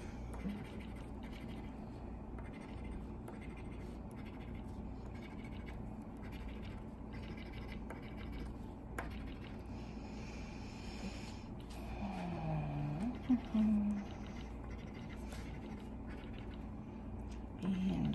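A coin scratching the coating off a paper scratch-off lottery ticket in short strokes. A brief low murmur of a voice comes about twelve seconds in.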